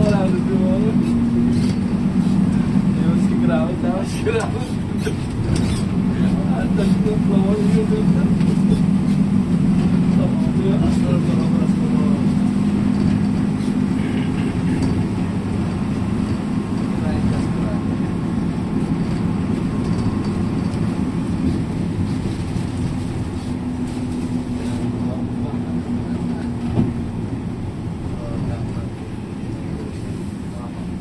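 Steady engine drone and road noise heard inside the cabin of a moving vehicle, with a small knock late on.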